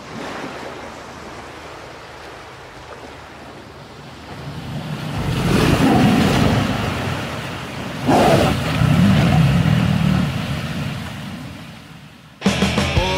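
Ocean surf crashing: a wash of waves that builds and swells into a big crash about halfway through and a second, sudden one about two-thirds of the way in, then dies away.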